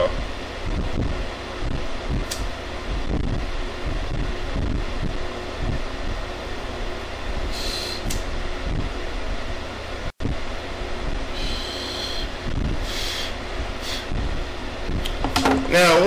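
Steady low fan-like hum of a small room, with a few short hissing sounds as a rolled joint is lit and drawn on and smoke is exhaled. The audio cuts out for an instant a little past the middle.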